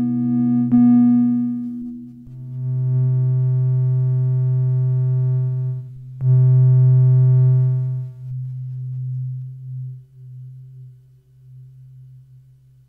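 Ciat Lonbarde Sidrax and Cocoquantus analog synthesizers played through their touch plates: a steady low electronic drone with buzzy higher tones layered on top, new ones coming in about one, two and a half and six seconds in and each held for a few seconds. The tones drop away after about eight seconds, and the drone fades out near the end.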